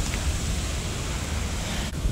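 Wind blowing across a phone microphone: a steady rushing noise with a low rumble.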